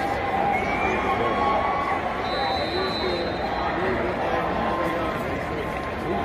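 Stadium crowd: many voices talking and calling out at once, a steady babble, with a short high whistle a little over two seconds in.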